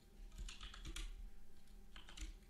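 A few scattered keystrokes on a computer keyboard, entering a value into the software.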